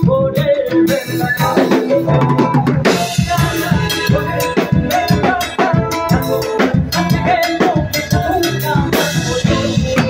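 Live band playing a dance tune, the drum kit's snare and bass drum beating a steady rhythm to the fore, with electric guitar and bass, and no singing.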